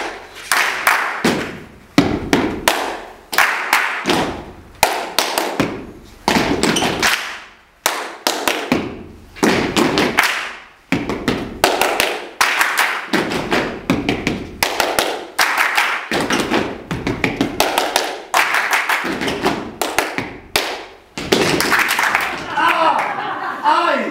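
Group body percussion: hand claps and foot stamps on a hard floor, played in short rhythmic phrases with brief gaps between them. Each strike rings on in a hard-walled room.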